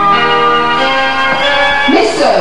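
Bells ringing as part of the stage music: held, overlapping bell tones, with new notes coming in about three times.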